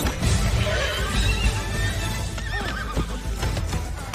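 Film soundtrack: orchestral score that starts suddenly, with a horse neighing and its hooves pounding as it bucks under a spurring rider.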